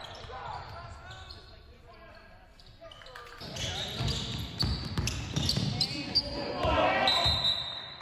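Basketball game sounds on a hardwood gym floor: a ball being dribbled and sneakers squeaking, with players' voices echoing in the hall. It gets louder and busier about three and a half seconds in.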